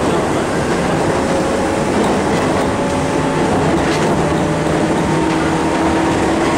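Electric train running, heard from inside the car: a steady rumble of wheels on rail. Over it sit several steady humming tones that shift in pitch partway through, with a couple of faint clicks.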